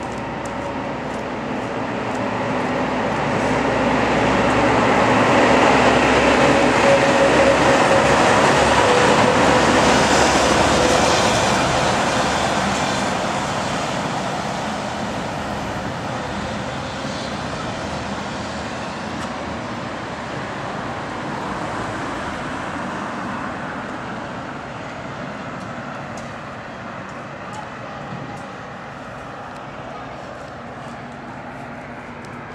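Street traffic noise from a passing vehicle, swelling over several seconds and then slowly fading away.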